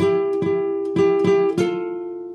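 Nylon-string classical guitar: a two-note shape on the second and third strings, plucked over and over about three times a second. A last pluck about one and a half seconds in is left ringing and fading.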